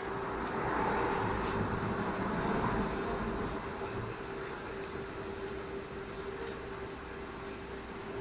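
Steady mechanical hum and hiss with one constant mid-pitched tone running through it, a little louder for the first few seconds and then even.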